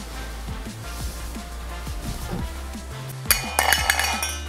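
Quiet background music, then near the end a quick run of metallic clinks with a ringing tail: a thrown object striking and rattling in an enamel metal mug.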